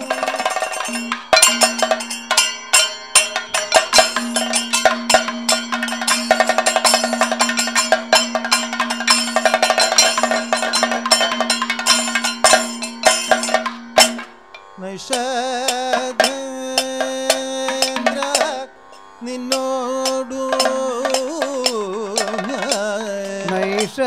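Kathakali accompaniment: chenda and maddalam drums played in dense strokes, with a small metal gong keeping time, over a steady drone. About fifteen seconds in, the drumming thins out and a voice begins singing in Carnatic style.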